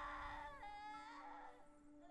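A faint, wavering, crying voice from the anime soundtrack, over a low steady tone.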